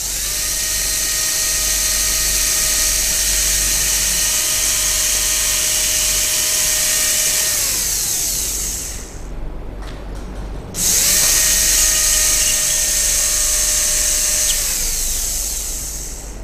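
Dental handpiece with a round bur running as it cuts the access opening into a model primary molar for a pulpotomy: a steady whine over a loud hiss. It winds down with a falling pitch about eight seconds in, then starts again with a rising pitch about three seconds later and runs on.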